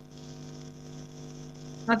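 Steady electrical hum with a buzzing edge, several steady tones held at an even level, heard through video-call audio.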